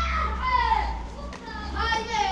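Children's voices calling out in a few drawn-out, high-pitched calls, with a steady low rumble underneath.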